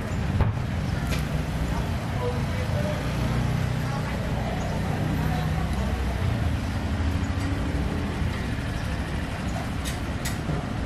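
Street traffic, with a vehicle engine running steadily as a low hum, and a sharp click about half a second in.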